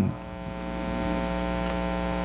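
Steady electrical mains hum in the sound system: an even, buzzy drone with many evenly spaced overtones that does not change.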